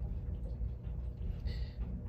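Near-quiet room tone: a steady low rumble under faint hiss during a pause in talking, with a faint short breath-like hiss just before the speech resumes.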